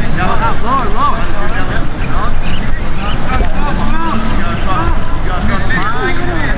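Wind buffeting the microphone in a steady low rumble, with short shouted calls from voices further off breaking through it again and again.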